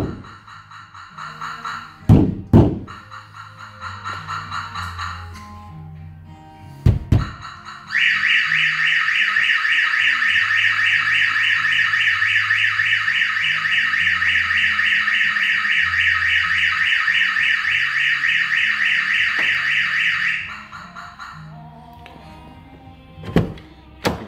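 Clifford 330x1 van alarm: a few thuds from the van's back door being shaken, with faint warn-away chirps, then the full electronic siren sounds loud and steady for about twelve seconds before cutting off suddenly. The shock sensor has been tripped by the shaking of the door.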